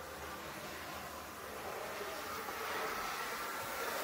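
Steady whir of an HO-scale IHC Premier dual-motor GG-1 electric locomotive model running along the track, growing a little louder toward the end as a thin whine comes in about halfway through.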